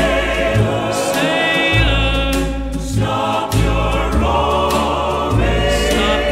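Early-1960s pop ballad recording: a studio orchestra with a mixed chorus singing sustained notes over a bass line that changes note every second or so.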